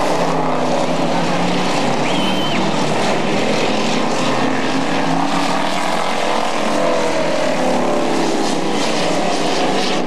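Street stock race cars' engines running around an asphalt oval, several engines overlapping and rising and falling in pitch as the cars pass.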